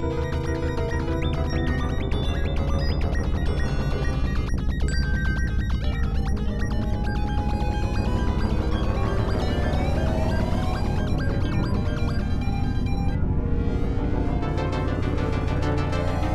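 Experimental electronic synthesizer music: a dense, steady low drone under clusters of shifting higher tones, with rising pitch glides through the second half.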